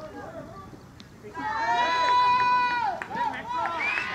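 Men shouting on a cricket field: one long, high-pitched yell starting about a second and a half in and held for over a second, then shorter shouts. It is cheering for a hit that the umpire signals as a six.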